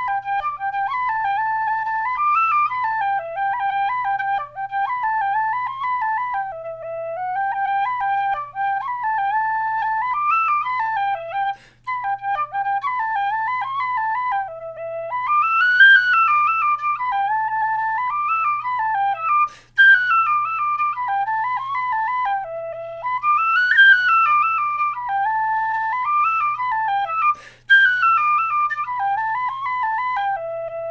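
Generation Shush tin whistle, a Generation whistle with a green mouthpiece and a metal strip around the blade to make it very quiet, playing a tune with ornamented runs and three short pauses for breath. Its tone is slightly altered, as if something were blocking the breath a little.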